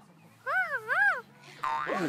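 Cartoon sound effect: a wobbling boing tone that swings up and down in pitch twice, starting about half a second in. It is followed near the end by a buzzy twang as the next effect begins.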